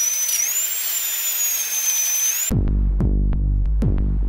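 High-pitched whine of a dentist's drill sound effect, slightly wavering, that cuts off abruptly about two and a half seconds in. Music with a deep steady bass and a regular beat then takes over.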